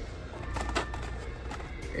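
Faint background music over a low steady hum, with a few light clicks as a blister-packed die-cast car is lifted off its peg.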